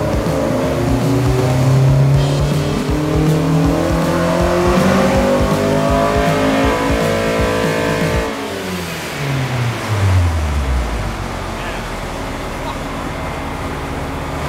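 Mazda Miata four-cylinder engine, fitted with an aftermarket intake manifold and throttle body, making a full-throttle power run on a chassis dyno. The revs climb steadily for about eight seconds, then the throttle closes and the revs fall away over a couple of seconds to a low idle.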